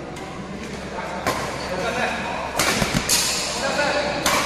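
Badminton rackets striking a shuttlecock during a doubles rally. There are three sharp hits, echoing in the hall: one about a second in, then two close together in the second half, over the murmur of voices.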